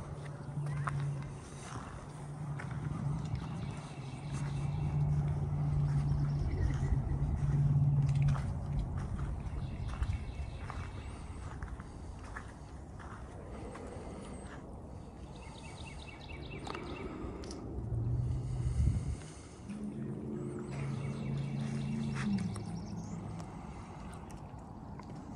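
Wind buffeting the microphone over a low, steady engine hum that fades and returns, stepping down in pitch near the end.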